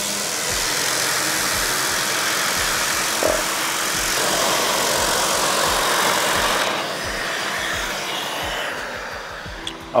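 A JOST Big Boy large-area random orbital sander with a 5 mm stroke runs on a veneered wood panel, with dust extraction attached. It makes a steady whirring rush of motor and abrasive. About seven seconds in the sound turns quieter and duller.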